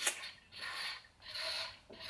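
A woman drinking from a water bottle while out of breath after a treadmill workout: three short, breathy gulps about three-quarters of a second apart.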